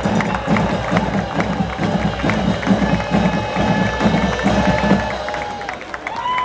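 Band music with a steady drum beat over a cheering crowd; the music stops about five seconds in.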